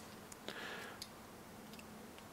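Faint, scattered small clicks of a hex driver and a tiny set screw being worked into a plastic sway bar mount, a few ticks spread over two seconds.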